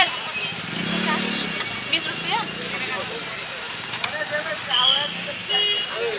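Busy street ambience: voices talking nearby over the low hum of passing vehicles. A short, high horn toot sounds near the end.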